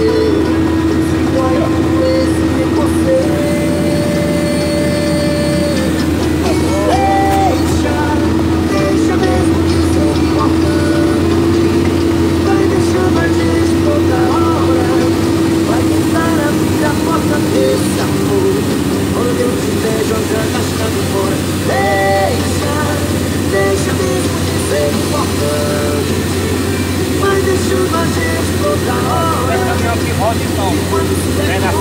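Steady drone of a log-laden Iveco diesel truck heard from inside the cab while driving, with a song playing on the cab stereo over it.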